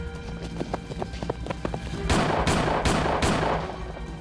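Rifle shots in a film gunfight over a music score: a quick run of lighter taps, then about two seconds in, four loud shots roughly half a second apart, each with a short echo.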